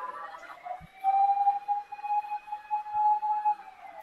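A siren wailing, out of sight: it rises slowly in pitch over the first second, holds a steady high tone for about two and a half seconds, then starts to fall near the end.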